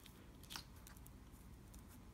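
Near silence, with one faint click about half a second in from hands handling card stock on a stamping platform.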